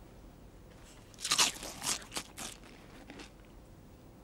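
A child biting and chewing crisps: a quick run of loud crunches starting about a second in, then one more near the end.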